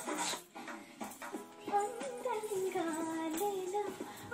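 A female voice singing a melody in held, stepped notes, starting about a second in.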